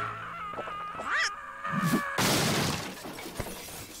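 Animation sound effects of a character being flung across a room: a steady high hum and a short cry, then about two seconds in a loud crash with shattering that dies away over about a second.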